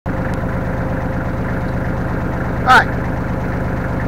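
Kubota compact tractor's diesel engine running steadily with an even pulse while the tractor stands still.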